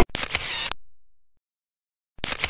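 Camera shutter sound from a photo booth taking a picture: one shutter burst at the very start that fades out within about a second, then silence.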